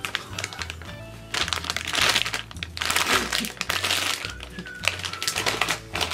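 Plastic snack bag crinkling in repeated bursts as it is handled, over background music with a steady low bass beat.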